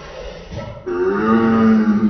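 A man's long, low, drawn-out groan of pain, starting about a second in and held steady for over a second. It is his reaction to the burn of hot-wing sauce and pepper snorted up his nose.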